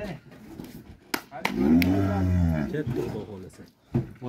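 A Holstein dairy cow moos once, a long low call lasting about a second and a half that rises and then falls in pitch. A sharp knock comes just before it.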